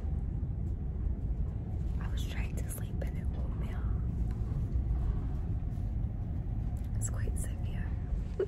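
Steady low rumble of the ferry's engines and hull, heard from inside a passenger lounge on a rough crossing, with a woman whispering in short bursts a couple of seconds in and again near the end.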